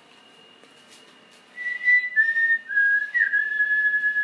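A person whistling, starting about a second and a half in: a few short held notes stepping slightly down in pitch, then one long note.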